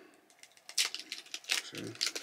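Wrapper of a Starburst Swirlers candy pack crinkling as it is handled and opened, with a few short sharp crackles.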